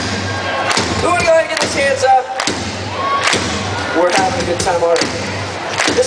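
Live rock band through an outdoor PA: drum hits about once a second, with a voice shouting or singing over them.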